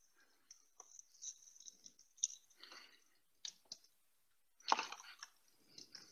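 Test cable being handled and plugged in: faint scattered clicks and rustles of the leads and connectors, with one louder clack about five seconds in.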